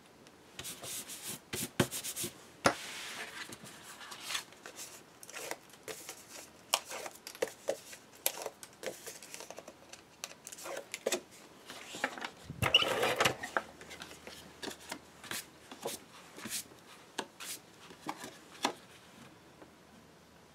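Paper and cardstock being handled on a tabletop: sheets and mats sliding, rustling and being set down, with many sharp clicks and taps throughout. Two longer rubbing sounds stand out, one about two and a half seconds in and a louder one around thirteen seconds.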